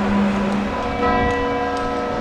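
Church bells ringing, with a fresh strike about a second in whose tones hang on and fade slowly, over a low rumble.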